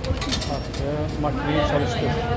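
People talking, with a short run of light, high clicks near the start.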